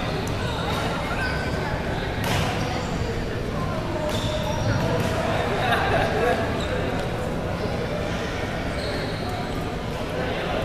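Echoing sports-hall ambience: indistinct voices of people around the courts, with a sharp hit about two seconds in and short squeaks scattered through.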